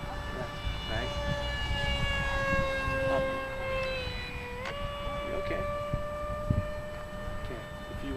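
A foam RC F-15 model's electric motor whines as it flies overhead. Its pitch sags slowly, then jumps back up about four and a half seconds in, with low wind rumble on the microphone.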